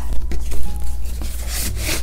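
Paper and cardboard rubbing and scraping against each other in irregular surges as items are packed into a cardboard shipping box.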